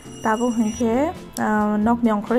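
A voice over background music, the voice rising and falling in pitch in short phrases.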